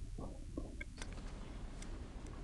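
Low, steady rumbling background noise, with faint murmuring in the first second and a single sharp click about a second in.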